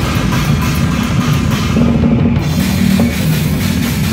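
Death grind band playing live and loud, with the drum kit to the fore: bass drum, snare and cymbals over a dense wall of low, distorted band sound.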